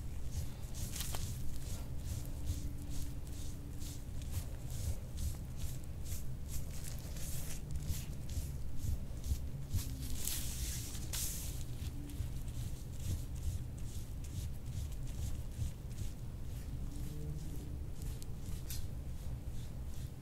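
Metal soft-tissue scraper (IASTM tool) drawn over oiled skin on the upper back in quick, short, repeated strokes, a few per second, making a soft scraping sound.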